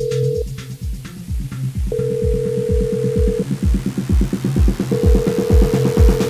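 Electronic dance music with a steady kick drum and bass line, over which a telephone ringback tone sounds three times, each about a second and a half long, with the beat filling out and growing louder toward the end.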